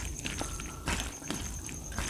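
Fingers mixing rice with curry on a steel plate: irregular wet squishes and light clicks of fingers against the metal, the loudest click about a second in.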